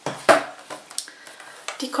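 A few short knocks and taps as a boxed Morphe eyeshadow palette is picked up and handled, the loudest about a third of a second in.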